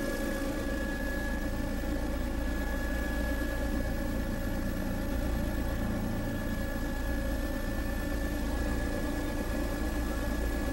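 Steady drone of a survey aircraft's engine heard inside the cabin. It stays even throughout, with several steady tones over a broad rushing noise.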